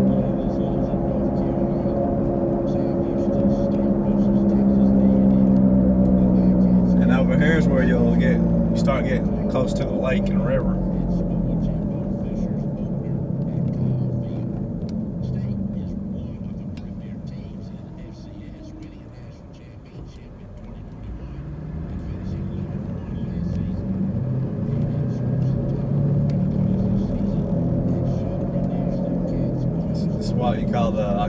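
Car interior while driving in traffic: a steady engine and road drone that fades down about two-thirds of the way through and then builds again.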